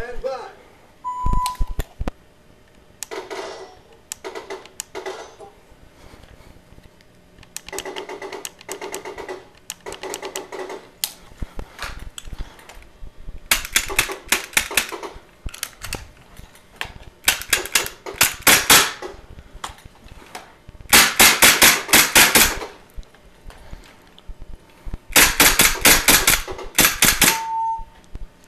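A short steady beep about a second in and another near the end, with strings of rapid sharp shots in between. First come groups of clicks and strikes with a ringing note. From about halfway on come four loud quick bursts of pops from a Sig P320 cycling on a CoolFire CO2 trainer barrel.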